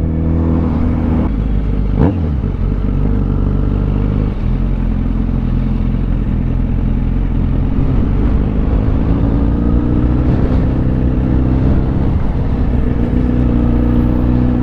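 2010 Yamaha FZ1-N's inline-four engine running at low road speed through town traffic, its note shifting slightly up and down with the throttle, with a single sharp click about two seconds in.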